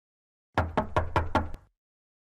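Knocking on a door: a quick run of about five knocks lasting about a second.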